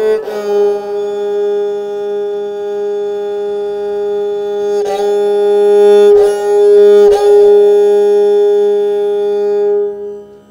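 Esraj, a bowed Indian string instrument, playing the slow, unmetered aalap of Raag Puriya Dhanashri: one long sustained note with short breaks about five, six and seven seconds in, fading away at the very end.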